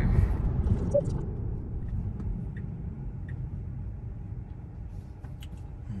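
Road and tyre noise inside the cabin of a Tesla electric car: a low rumble that fades as the car slows from highway speed.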